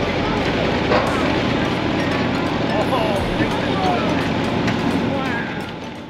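Steady outdoor background noise with faint, indistinct voices mixed in, fading out near the end.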